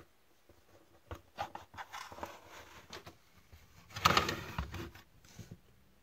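Black plastic Bostitch drill-bit case being handled and opened: a sharp click at the start, then scattered clicks and scrapes, and a louder plastic clatter about four seconds in.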